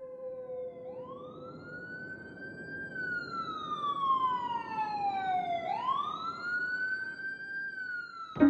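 Ambulance siren wailing: starting about a second in, its pitch rises, falls slowly, then rises again, over a steady hiss. A faint held low tone fades out in the first second or so.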